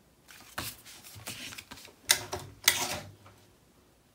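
Paper and cardstock being handled and pressed into place on a scrapbook page: rustling and light clicks, with two sharper snaps a little past the middle.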